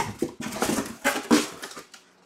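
Cardboard boxes being handled: a quick run of scraping and rustling bumps as a box is pulled out and lifted.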